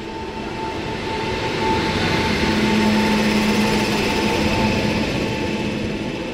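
A WAP7 electric locomotive and its passenger coaches passing close on the next track: a steady rush of wheels on rail with a steady whine from the locomotive, growing louder to a peak about halfway through and then easing a little.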